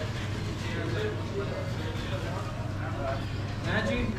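Indistinct background voices of people talking over a steady low hum.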